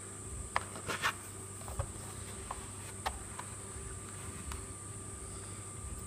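Faint handling noise of a plastic RC jet boat hull: a few light clicks and taps in the first three seconds, over a steady high-pitched hiss.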